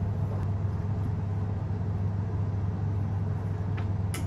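A steady low mechanical hum, with a couple of faint clicks near the end.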